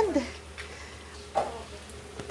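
Chicken tails frying in their own rendered fat at a rapid boil over high heat, a faint steady sizzle as they are stirred with a spatula.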